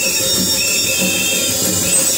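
Loud worship music: voices singing over a steady beat on a large laced hide drum.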